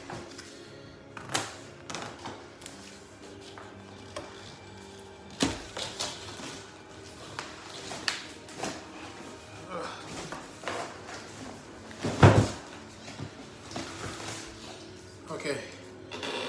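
Cardboard box being pulled and torn open by hand: irregular scraping, rustling and knocks of cardboard, with the loudest thump about twelve seconds in.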